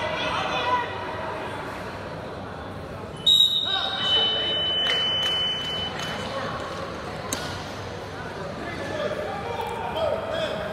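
Spectators' voices and shouts in a school gym. About three seconds in, a single high, steady whistle blast starts suddenly and sounds for over two seconds: the referee's whistle stopping a wrestling bout on a pin.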